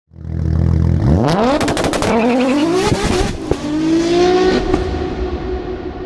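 A car engine accelerating hard through the gears. Its note climbs, then drops back at each upshift about one, two and three seconds in, with a quick series of sharp cracks between the first two shifts. It then eases into a steadier, fading tone.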